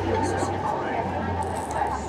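A car driving past on the street, a low steady rumble, with talk of people at nearby tables in the background.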